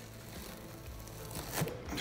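Adhesive tape being peeled off a rusty steel panel, faint at first and louder with a few crackles near the end.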